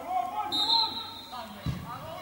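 A short, steady referee's whistle, then a dull thud of a football being struck for a free kick near the end, over faint voices of players and spectators.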